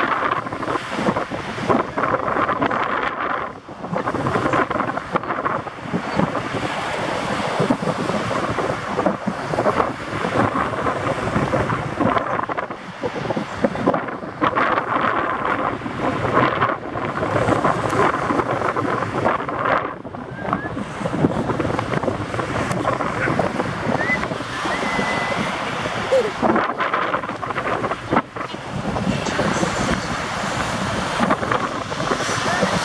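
Wind buffeting the camera microphone in gusts, rising and falling in loudness, over the wash of surf breaking on the shore.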